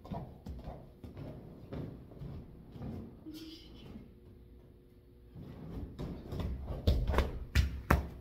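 Bare feet thudding and stepping on padded gym mats, with a few heavy thumps near the end.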